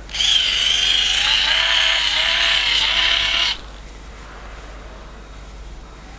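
Bosch rotating hot-air brush running as it curls a section of hair: a steady, high motor-and-fan whir whose pitch wavers slightly. It is switched off suddenly about three and a half seconds in.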